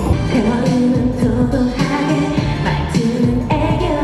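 K-pop girl group performing a pop song live on stage: female vocals over a loud backing track, picked up from the audience.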